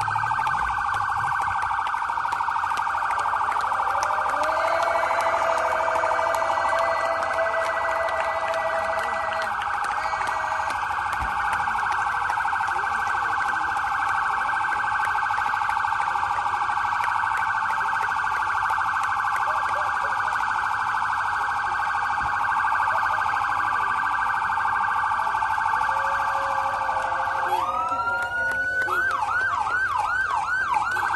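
Police motorcade escort siren sounding in a rapid, steady warble; near the end it switches to a rising wail and then a fast yelp sweeping up and down about three times a second.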